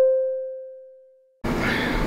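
A single bell-like ding from the channel's logo sting, ringing out and fading away over about a second. About a second and a half in, outdoor street noise with traffic rumble cuts in.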